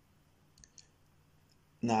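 Near silence with two faint, short clicks close together a little over half a second in; a man's voice starts near the end.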